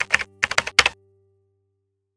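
Computer keyboard typing sound effect: a quick run of clicking keystrokes in the first second, matching text typed into an on-screen search bar, followed by a faint low tone that fades out.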